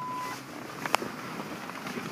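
A steady electronic beep from the pickup's cab electronics stops shortly in. About a second in there is a single sharp click, over low background noise.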